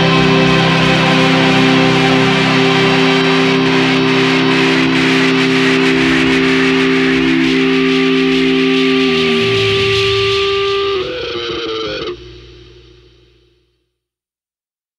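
A psychedelic stoner rock band holds a ringing final chord, with electric guitar to the fore. The sound drops away in two steps, about eleven and twelve seconds in, then fades to silence just before the end as the track finishes.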